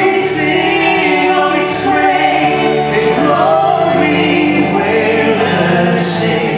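A man and a woman singing a gospel song as a duet through handheld microphones, with sustained notes over a musical accompaniment.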